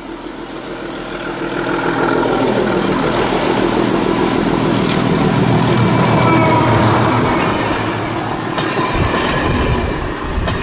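A class 749 'Bardotka' diesel locomotive approaches and passes close by. Its engine grows louder over the first two seconds and stays loud as it goes past, and a high, thin wheel squeal joins in over the last couple of seconds.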